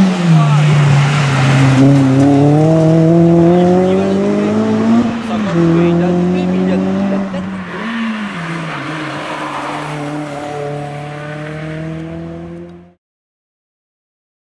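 Renault Clio III RS Group N rally car's 2.0-litre four-cylinder engine accelerating hard, its pitch climbing steadily and then dropping sharply at a gear change about five seconds in. A brief rise and fall in pitch follows about eight seconds in, then the engine runs steadily while growing fainter as the car goes away, until the sound cuts off abruptly near the end.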